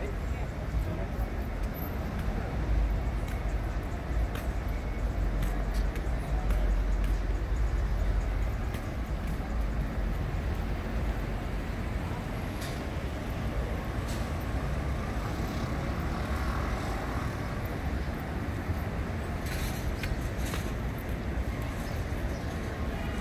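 Busy city street ambience: a steady rumble of road traffic, heaviest in the first several seconds, with pedestrians' voices mixed in.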